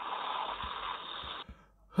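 Steady hiss of an open spacesuit radio channel on the spacewalk communication loop, cutting off suddenly about one and a half seconds in.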